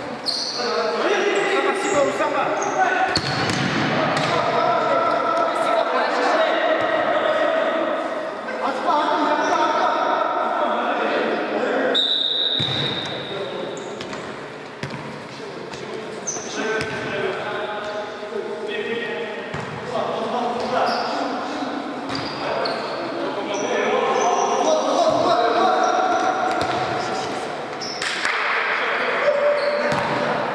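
Futsal game in an echoing sports hall: players shouting and calling to each other, with the ball being kicked and bouncing on the court floor. A short high whistle blast sounds about twelve seconds in.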